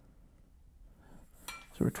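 A metal ruler being repositioned on a guitar body. It is mostly quiet, with a brief light metallic clink about one and a half seconds in, just before a man starts to speak.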